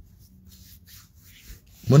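A pause in a man's talk filled with faint rubbing and rustling noise, then his voice starts again just before the end.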